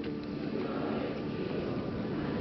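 Indistinct murmur and stir of a crowd packed into a church, a steady haze of noise without clear words.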